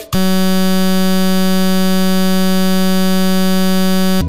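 A loud, steady electronic buzz at one low pitch with many overtones cuts off the music just after the start and holds without change for about four seconds. It is a playback glitch in a videotape transfer, and the picture breaks up with it.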